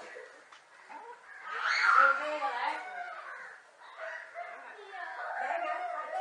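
Indistinct, excited human voices mixed with animal cries, with a loud, high-pitched cry about two seconds in.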